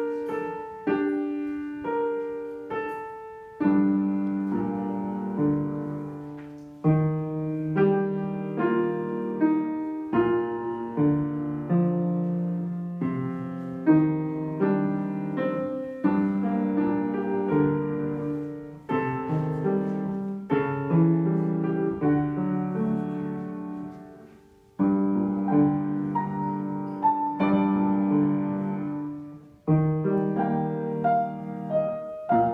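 Upright piano playing a slow melody. Lower chords in the left hand join about four seconds in, and the playing pauses briefly a few times between phrases.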